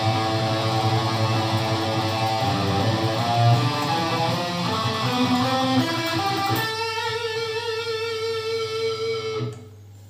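Seven-string electric guitar picked with a plectrum, the pick held slightly tilted to the string for fast picking. A quick run of picked notes lasts about six and a half seconds, then one note is held and rings until it is cut off shortly before the end.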